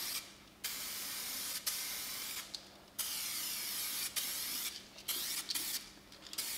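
Aerosol can of 2K paint spraying in passes of one to two seconds, a steady high hiss that stops briefly between passes, about four times.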